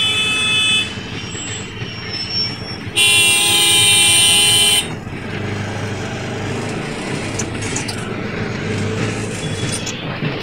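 Vehicle horns in traffic: a short honk at the start and a longer, louder blast from about three seconds in to nearly five seconds. Underneath runs the steady engine and road noise of a moving auto-rickshaw.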